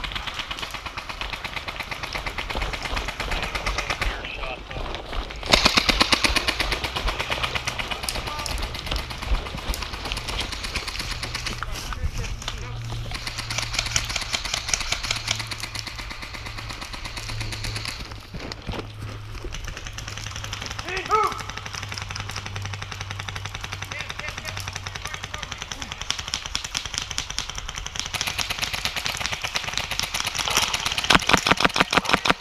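Airsoft electric guns (AEGs) firing in rapid, rattling bursts during a game, with faint voices.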